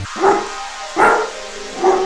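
A trap instrumental drops its bass and synths for a short break. In the gap come three short dog barks, a sample in the beat, evenly spaced about 0.8 seconds apart.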